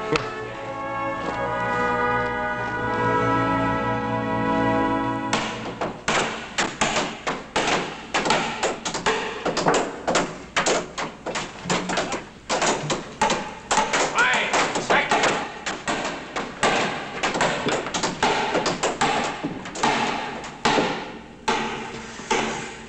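A short music cue of sustained chords that breaks off about five seconds in, followed by a dense run of hammering: mallets and sledgehammers knocking square-set mine timbers into place, several blows a second.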